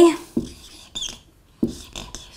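A marker writing on a whiteboard: a few short squeaks and scratches of the tip as a word is written out in separate strokes.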